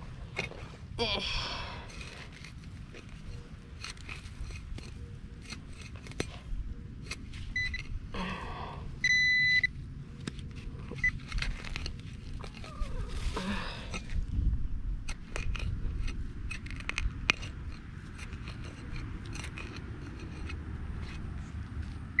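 Soil being dug and scraped with a serrated hand digger: many short scrapes, crunches and clicks. A handheld pinpointer beeps as it is brought to the hole: a steady high beep of about half a second a little past the middle, with short blips a second or so either side of it, its signal that the target is close.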